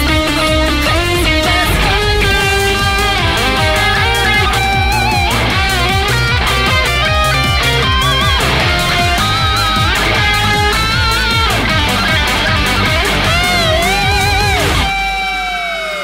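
Lead electric guitar solo on a Telecaster-style guitar: fast picked runs with string bends and vibrato over a rhythmic backing track. Near the end the backing drops away, leaving one long held note that then slides down in pitch.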